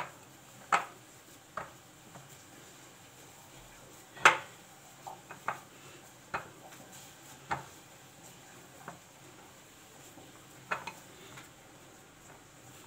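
Scattered clinks and knocks against a mixing bowl as dough is mixed and worked by hand, about a dozen at irregular intervals, the loudest about four seconds in.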